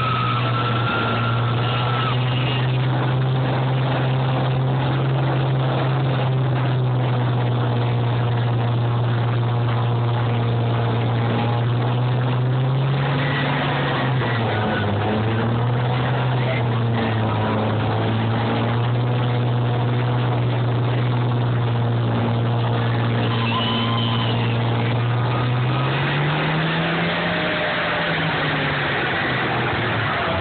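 Combine harvester diesel engines running loud and steady. The pitch dips about halfway through and rises briefly near the end as the machines work the arena.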